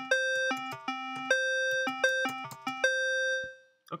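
Tone.js browser synth playing a quick run of short electronic notes, jumping back and forth between C4 and C5 as keyboard keys are pressed. The last note is held and fades out about three and a half seconds in.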